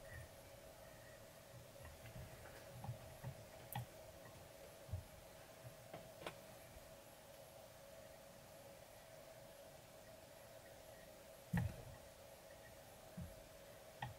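Faint handling noises at a fly-tying vise: a few soft clicks and small knocks from fingers and tools on the fly and vise, the loudest knock about three-quarters of the way through, over a steady faint hum.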